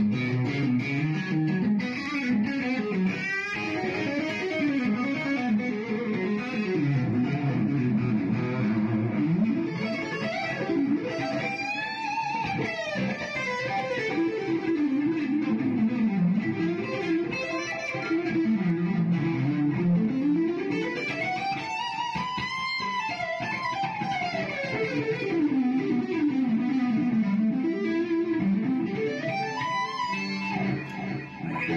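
Electric guitar played through an MLC amplifier, fast legato runs sweeping up and down the neck without a break, heard through a phone's microphone.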